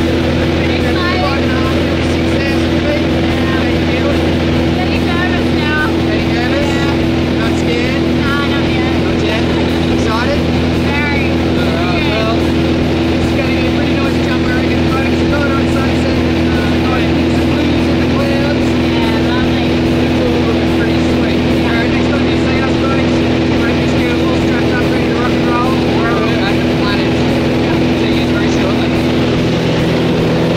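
Steady drone of a light plane's piston engine and propeller heard from inside the cabin, holding at an even pitch through the climb, with indistinct voices under it.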